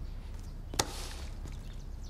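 A single sharp click a little under a second in, trailing off in a short hiss, over faint room tone.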